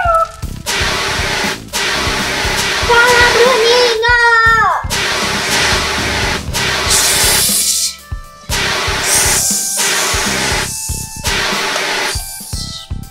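Background music runs throughout, with two short hissing spray bursts, an extinguisher-spray sound effect, about seven and nine seconds in.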